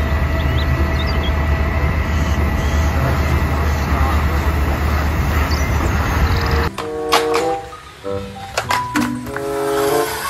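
Concrete mixer truck's diesel engine running steadily with a low hum. It cuts off abruptly about two-thirds of the way through, giving way to cheerful background music.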